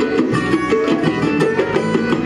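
Live band playing Tuareg desert-blues music: electric and acoustic guitars and a banjo picking quick, busy lines over a hand drum.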